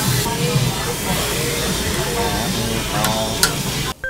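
Meat sizzling on a Korean barbecue tabletop grill, a steady hiss that cuts off suddenly at the very end.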